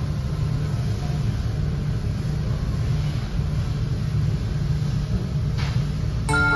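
Steady low rumble of restaurant room noise, with a faint even hiss above it and no distinct voices or clatter.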